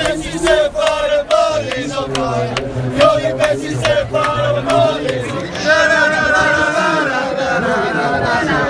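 A group of male football fans chanting a song together, loud and close. A long held note comes in the second half.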